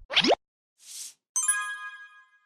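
Logo-transition sound effects: a quick rising pop at the start, a soft whoosh about a second in, then a bright chime that rings out and fades.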